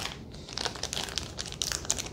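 Packaging being handled and crinkling: a run of quick, irregular crackles.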